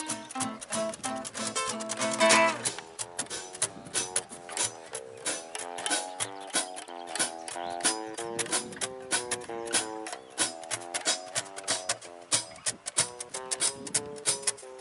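A small acoustic band playing an instrumental passage with a steady rhythm: acoustic guitars, electric bass and a cajon with a cymbal.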